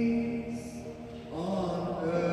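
A young man's solo voice singing unaccompanied into a microphone: a long held note that steps down to a lower held note about a second and a half in.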